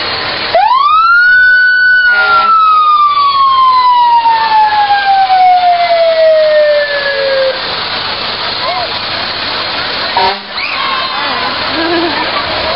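Fire truck siren winding up sharply about half a second in, then slowly falling in pitch for about seven seconds until it dies away. A short rising chirp follows near the end.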